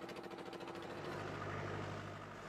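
A faint, steady engine hum with a fast regular pulse. It turns lower and slightly louder about a second in.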